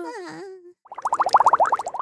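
Cartoon bubble sound effect: a rapid warbling burble of about a dozen quick pulses a second, lasting about a second, as the scene changes. Before it, the last sung note of a children's song fades out.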